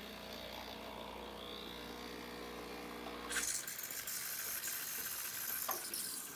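Breville Barista Express steam wand being purged after steaming milk. A steady hum from the machine runs for about three and a half seconds, then breaks into a loud, steady hiss of steam that lasts to near the end.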